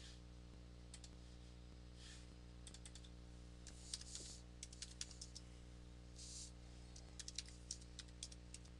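Computer keyboard typing: short runs of quick key clicks with pauses between them.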